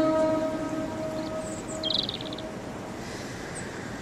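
A pause in vocal music: a held sung note fades out at the start, leaving faint hiss, with one brief high chirp about two seconds in.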